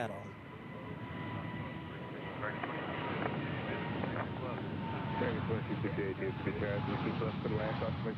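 Jet engines of a Korean Air Boeing 787 Dreamliner at takeoff power on its climb-out: a rushing roar that grows steadily louder, with a thin steady whine in it that fades out about six seconds in.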